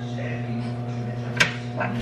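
A steady electrical hum from a kitchen appliance, with one sharp click about a second and a half in.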